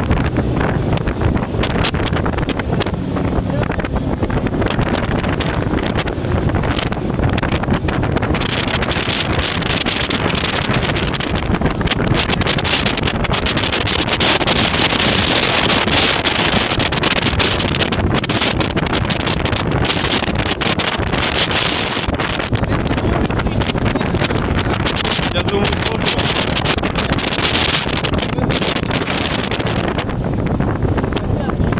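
Heavy wind buffeting the microphone over the steady running of a BTR-80 armored personnel carrier's V8 diesel engine as it drives along. The wind noise swells through the middle stretch and again near the end.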